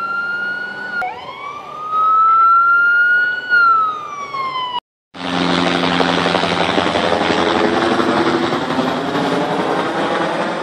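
Police siren wailing in two slow rise-and-fall sweeps, cut off abruptly almost five seconds in. After a brief gap, a loud, steady rushing noise takes over.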